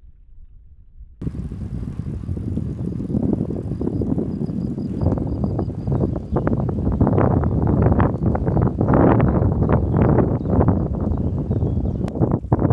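Loaded touring bicycle rolling along a paved path, with wind buffeting the microphone and road rumble starting suddenly about a second in. From about five seconds in, frequent rattling clicks and knocks sound over the rumble.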